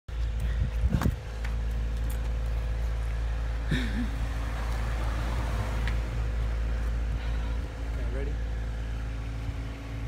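A steady low engine hum, as of a vehicle idling nearby, with a few knocks about a second in.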